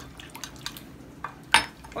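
Metal spoon clinking and scraping in a ceramic bowl as tarhana soup mix is stirred into cold water poured from a glass, with a louder sharp clack about one and a half seconds in, as the drinking glass is set down on the stone counter.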